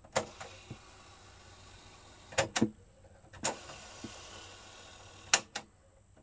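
Mechanical piano keys on a Sanyo MCD-Z330F boombox's cassette deck clack sharply about six times, some in quick pairs. A faint steady motor whir of the tape winding runs between the clicks and stops after the last pair near the end.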